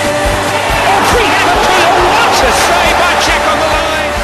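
Rock music track with match audio breaking through in the middle: shouting voices over stadium crowd noise swell from about a second in and fade near the end.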